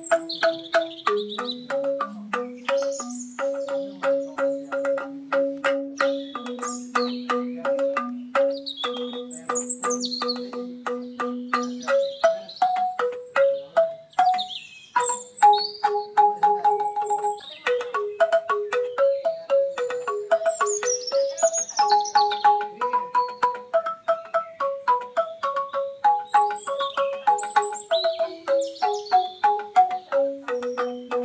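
Banyuwangi angklung music: struck bamboo tuned like a xylophone, with quick, steady strokes carrying a stepping melody.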